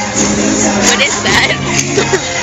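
Parade music from passing floats with long held notes, mixed with voices around the camera.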